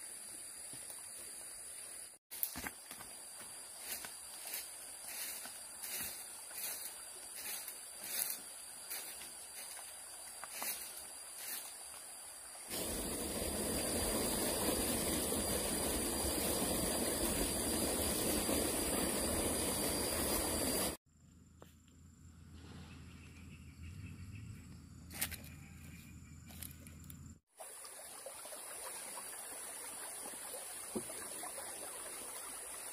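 Outdoor forest ambience with a steady high buzz, first with regular footsteps on a dirt path at a walking pace, then a louder stretch of even rushing noise for several seconds, cut off abruptly.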